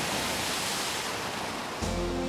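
Steady rushing noise from the demo's played-back soundtrack while the live microphone is muted. Near the end a short click comes, and steady music-like tones begin.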